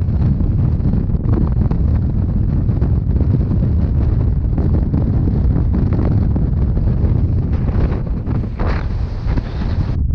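Strong wind buffeting the microphone of a handheld camera, a loud, steady low rumble, with a short rustle about eight and a half seconds in.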